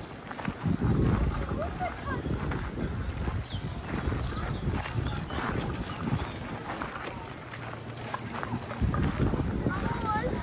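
Footsteps on a gravel path, with people's voices in the background and short chirping bird calls.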